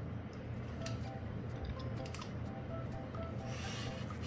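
Graphite pencil rubbing and scratching on workbook paper as a line is drawn, strongest in a short stroke just before the end.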